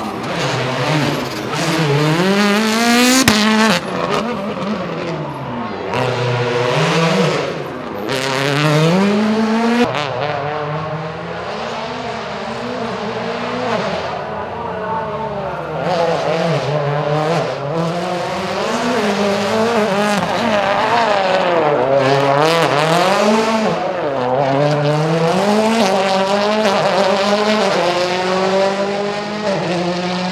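Rally car engines revving hard, the pitch climbing and dropping back again and again through gear changes as the cars accelerate and brake.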